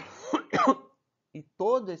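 A man clearing his throat: two short, harsh bursts within the first second.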